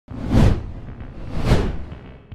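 Two whoosh sound effects of an animated title logo, each swelling up and falling away with a deep low end, the first peaking about half a second in and the second about a second and a half in.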